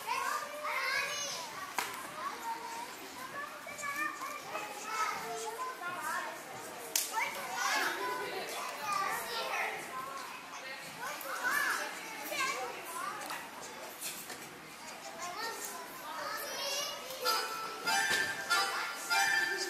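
Many young children chattering and calling out at once in a large, echoing hall. Music starts near the end.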